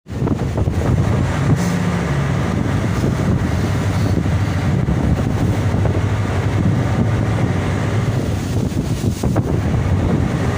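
A small fishing boat's engine running steadily at sea, with wind buffeting the microphone over it.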